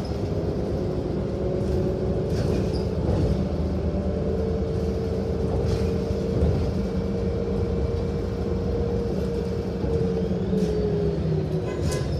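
Transit bus heard from inside the cabin while driving: steady engine and road rumble with a drivetrain whine that rises a little about four seconds in and falls away near the end. A few short rattles or clicks come through the cabin.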